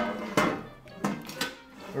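Kitchenware clattering on a counter: a sharp knock, then three or four lighter knocks as a baking sheet and a bowl are handled, with background music.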